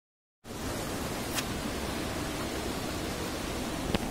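Silence for the first half second, then the steady rushing hiss of water flowing over stones in a shallow stream, with a sharp click about a second and a half in.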